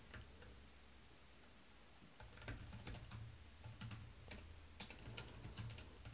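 Faint typing on a computer keyboard: a quiet stretch, then a run of irregular key clicks starting about two seconds in.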